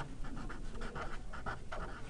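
Felt-tip marker writing on a paper pad: a soft run of short, quick scratching strokes as the letters are drawn.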